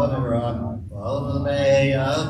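A man's voice chanting a Hebrew prayer in a slow, sung recitation, with a short break about a second in followed by a long held note.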